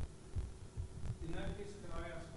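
A few low, dull thumps, then faint, indistinct speech from across the room in the second half.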